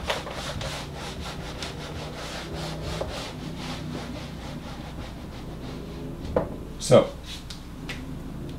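Whiteboard eraser rubbing across a whiteboard in quick back-and-forth strokes, wiping off marker writing, for the first five seconds or so. Near the end come two short knocks, the second the loudest sound here.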